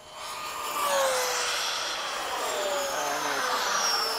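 Electric ducted-fan RC jets at full throttle making a fast low pass: a loud fan whine with a rush of air that swells within about a second, its pitch sliding down as they pass.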